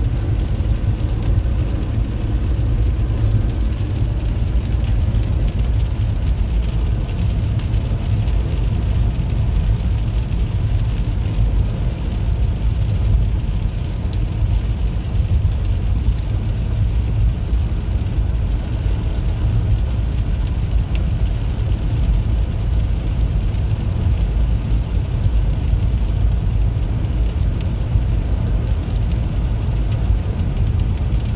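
Steady road and tyre noise heard inside a car cabin, cruising at highway speed on a wet road.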